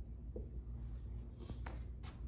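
Dry-erase marker writing on a whiteboard in a few short strokes, with a brief squeak early on and two quick strokes near the end, over a low steady room hum.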